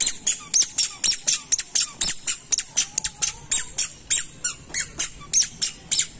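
A toddler's squeaky shoes, squeaking with every step as he walks: a steady run of short high squeaks, several a second.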